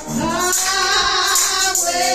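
Women singing a gospel song into microphones, one long sung line that bends in pitch, with the accompanying music behind it.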